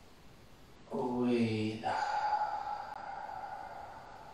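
A man's voice chanting a drawn-out low note for about a second, followed by a higher held tone that fades away over the next two seconds.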